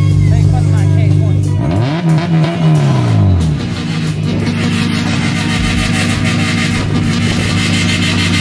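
Honda Civic's four-cylinder engine being revved: running steadily, then a throttle blip that rises and falls in pitch about two seconds in, then held at a steady raised rpm with a harsher, hissier note.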